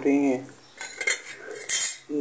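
Stainless steel spoons and dishes clinking and scraping as they are handled on a table: a quick run of bright clinks in the second half, loudest just before the end.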